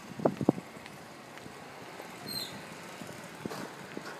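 Steady outdoor background noise, like distant street traffic, with a few brief knocks in the first half second.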